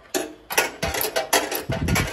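Stainless-steel wire grill rack of a Paloma gas stove clinking and rattling against the metal grill tray as it is handled in the grill compartment: a quick run of sharp metallic clinks.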